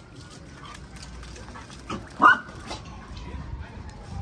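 A puppy gives one short, sharp bark about two seconds in, during rough play.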